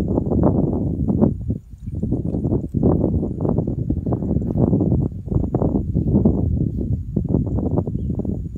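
Wind buffeting the microphone in gusts: a loud, uneven low rumble that briefly drops away about a second and a half in.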